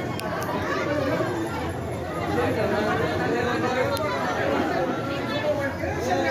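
Crowd chatter: many people talking at once, a steady hubbub of overlapping voices with no single voice standing out.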